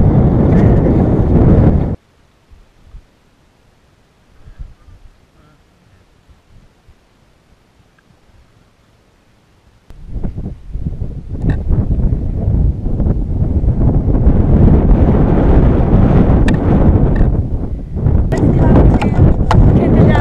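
Wind buffeting a camera microphone, a loud low rumble without any tone. It cuts off abruptly about two seconds in to a quiet stretch, then comes back about halfway through and carries on.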